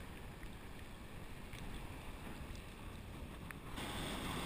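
Low rumbling wash of ocean water swirling around the pier pilings, heard from right at the water's surface. Near the end it switches abruptly to louder, hissier surf.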